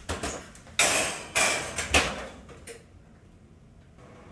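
Oven door being opened, a metal springform pan set onto the oven rack, and the door shut: a handful of metallic clanks and knocks over the first two to three seconds, the longest about a second in.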